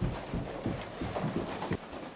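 Footsteps climbing carpeted stairs, about three thudding steps a second.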